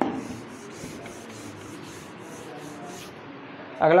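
Rhythmic rubbing strokes on a whiteboard, about three a second, after a brief thump at the start.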